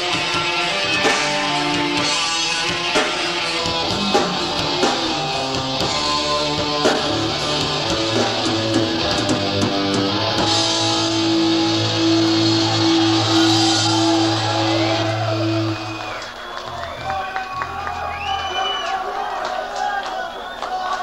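Live metal band playing with electric guitars, bass, drums and keyboards. About half-way through the band holds a long sustained chord, and after about sixteen seconds the level drops as the song winds down.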